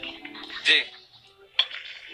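A kitchen knife and dishes clinking on a countertop: a clatter a little under a second in, then one sharp clink about a second and a half in.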